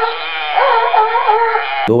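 A sea lion's single long call, wavering up and down in pitch, thin-sounding with no deep bass. It cuts off abruptly near the end.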